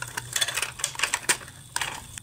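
Irregular clicks and taps of a rubber tire being stretched and worked around the toothed plastic wheel of a Hayward suction-side pool cleaner.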